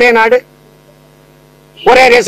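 A man's voice ends a drawn-out word, then a steady electrical hum is heard alone for about a second and a half before his speech resumes near the end.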